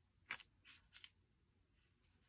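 A few faint, brief rustles and clicks of cardstock being handled as a small paper sentiment strip is picked up and pressed down onto a card panel.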